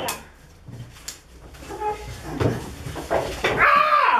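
People's voices making wordless sounds: a few short vocal noises and two sharp clicks, then near the end a loud, drawn-out exclamation whose pitch falls.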